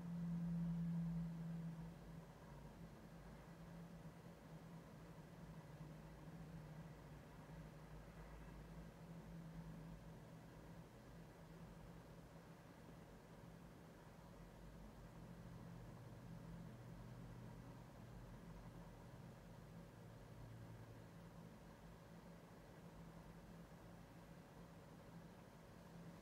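Near silence: room tone with a faint, steady low hum, a little louder in the first two seconds.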